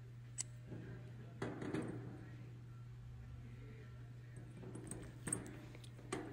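Faint clicks and light metallic rattles of small steel valve parts being handled by hand. There is a tick under half a second in, a cluster of rattles between one and two seconds in, and a sharper click near the end, all over a steady low hum.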